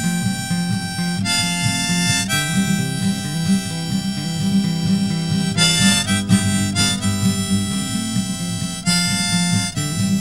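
Harmonica played in a neck rack over a strummed acoustic guitar, in an instrumental break with mostly long held notes that change every second or few.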